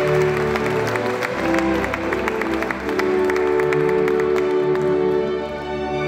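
Audience applauding over instrumental background music with long held notes.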